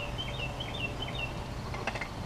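A bird's quick series of short, high chirps, about five a second, stopping a little past halfway, over a steady low outdoor rumble. A faint click comes near the end.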